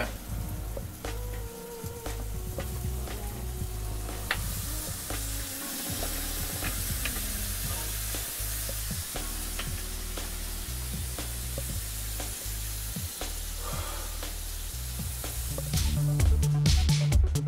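Sandwiches sizzling in a closed electric panini press, with background music and its bass line underneath.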